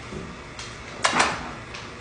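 A brief knock with a short clatter about a second in, preceded by a fainter tap.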